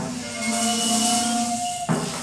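A small amateur group playing a graphic-score composition: held pitched notes over a hiss in the high end, with a fresh sharp attack at the start and again near the end.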